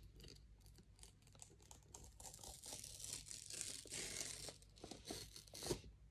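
Fingers picking at and peeling the sealed flap of a cardboard headphone box, faint. A few small scratches and clicks, then a longer papery tearing rasp from about two to five seconds in, and a couple of sharper clicks near the end.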